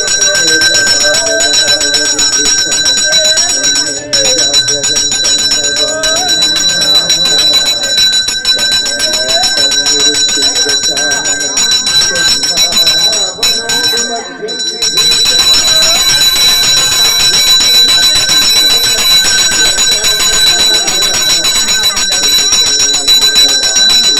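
A temple bell rung rapidly and continuously, its steady ringing tones carrying on throughout, with a brief break about two-thirds of the way through. Voices sound underneath.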